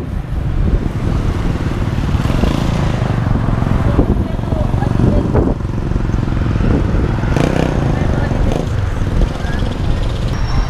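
Roadside traffic noise: cars and motorcycles going by, heard as a steady low rumble.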